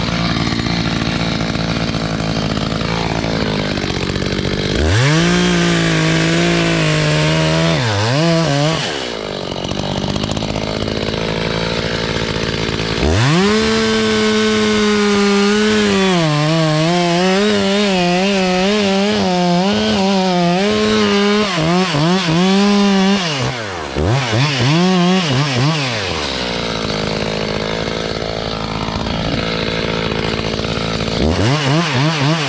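Two-stroke chainsaw cutting into the base of a larch trunk. It idles, then revs up to full speed about five seconds in for a short cut and drops back to idle. It revs up again for a longer cut of about ten seconds, the engine note wavering as the chain loads in the wood. After a few brief blips it settles back to idle near the end.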